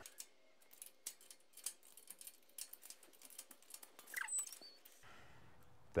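Faint, irregular metal clicks of a wrench and hex key working on a brake caliper mount bolt, with a brief squeak about four seconds in.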